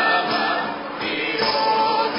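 Folk trio singing a Sicilian folk song together in several voices, with one voice holding a long steady note in the second half.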